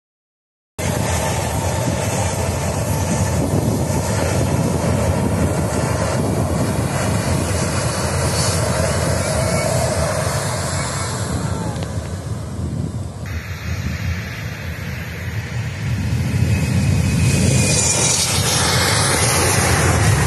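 After a second of silence, the twin turbofan engines of an Embraer E190 jet run steadily as it rolls along the runway. About three-quarters of the way through they grow louder and brighter, with a faint rising whine, as thrust comes up for the takeoff run.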